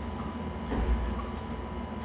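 Low background rumble with a faint steady high whine, the rumble swelling briefly about a second in.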